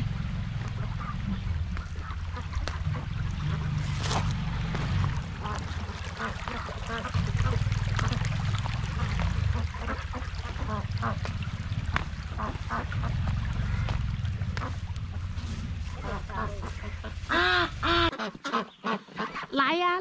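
Domestic ducks quacking, faint and scattered over a steady low rumble for most of the time. Near the end the rumble cuts off suddenly and the quacking becomes loud and close.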